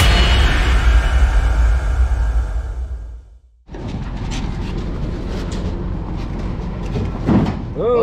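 Logo sting sound effect: a deep boom with a hiss that fades away over about three seconds and stops. After a brief silence come handling sounds from a race car being pulled out of an enclosed trailer, scattered clicks and knocks over a steady background.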